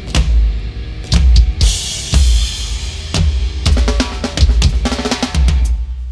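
Mathcore band playing live, mixed from the drum kit: heavy kick, snare and crash-cymbal hits over sustained distorted guitar and bass. A fast run of snare and tom hits starts about three and a half seconds in.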